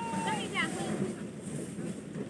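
A small child's high-pitched voice: a call trailing off at the start and a brief rising sound about half a second in, over a steady background hiss.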